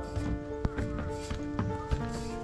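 Instrumental background music of long held notes, with a few sharp footsteps on concrete stair steps.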